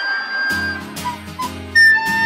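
A recorder playing a simple melody: one long high note, then a few short notes lower down, rising to a higher note near the end. Acoustic guitar strumming comes in under it about half a second in.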